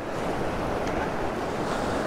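Shallow surf washing over sand, a steady rush of water, with wind on the microphone.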